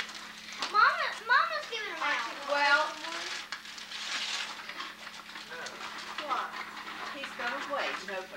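Indistinct voices of adults and children talking and exclaiming in a room, over a steady low hum on the recording.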